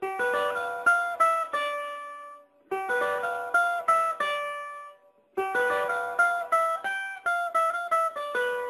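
Cavaquinho playing a single-note melody, each plucked note ringing and fading, in three short phrases with brief pauses between them.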